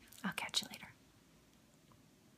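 A woman's brief whisper, lasting under a second, right at the start.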